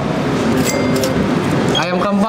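Indistinct voices chattering together in the background, with no single clear speaker, at a steady, fairly loud level; one voice stands out near the end.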